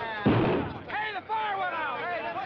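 A single loud bang with a deep rumble that dies away within about half a second, then men whooping and jeering.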